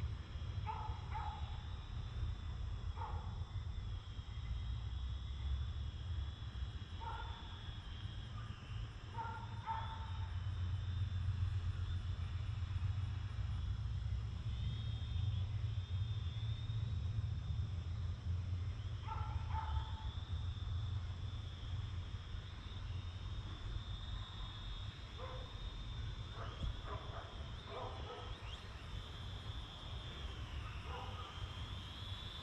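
Wind rumbling on the microphone, with the faint, wavering high whine of a small quadcopter's motors as it hovers overhead. Short animal calls, like distant barks, come every few seconds and in a cluster near the end.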